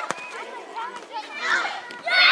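Children's voices calling and shouting on and around the pitch, with one sharp knock just after the start.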